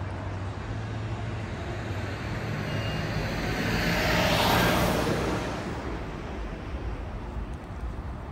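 Street traffic: a vehicle drives past close by, its tyre and road noise swelling to a peak around the middle and fading again, over a steady low engine hum.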